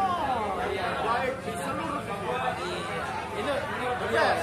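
Men talking: conversational chatter.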